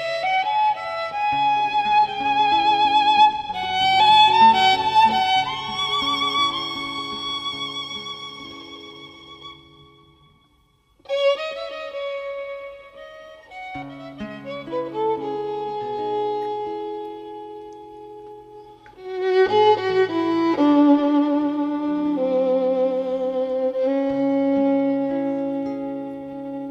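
Instrumental passage of a recorded tango between sung verses: a violin carries the melody with vibrato over sustained lower accompaniment. The music dies away about ten seconds in, and a new phrase starts a second later.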